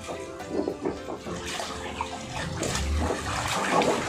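Water sloshing and splashing in an inflatable pool as swimmers move through it, with background music laid over it.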